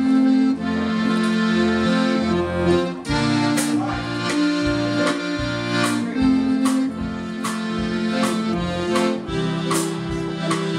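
Chemnitzer concertina (a Karpek Supreme) playing a dance tune in sustained reedy chords over changing bass notes. From about three seconds in, sharp regular hits come roughly once a second.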